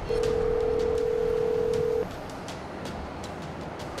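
A single steady telephone line tone, held for about two seconds and then cut off sharply, over a faint background hiss with scattered light clicks.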